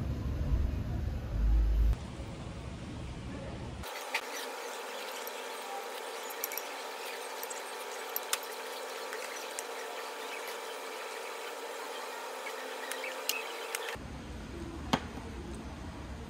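A metal spoon clinking and scraping against a ceramic plate as the last rice is scooped up: a handful of sharp, separate clicks over a faint steady hum. Before that, for the first couple of seconds, a low rumble.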